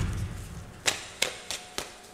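A deck of tarot cards being shuffled by hand: four sharp card snaps about a third of a second apart in the second half.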